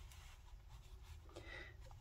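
Near silence: faint rustling of chenille blanket yarn as a crochet hook is worked through the stitches, over a low steady hum.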